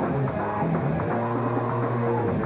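A hardcore punk band playing live: loud electric guitars and drums, with held low chords changing about every half second.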